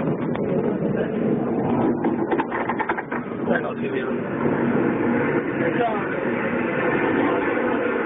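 Indistinct voices talking over one another over a steady background din, with no clear words.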